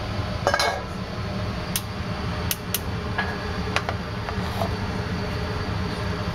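Potato chunks pushed off a cutting board into a pot of simmering stew with a wooden spoon: scattered sharp clicks and knocks of spoon, board and potatoes against the pot, about seven in all, over a steady low hum.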